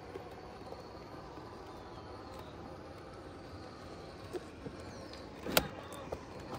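Axial SCX6 1/6-scale RC rock crawler working over rock: a faint electric-motor whine with small clicks of tyres and chassis on stone. One sharp knock about five and a half seconds in, the loudest sound.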